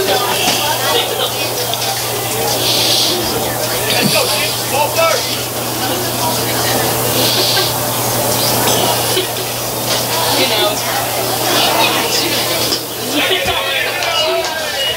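Spectators talking in the background in broken, overlapping snatches, over a steady low hum.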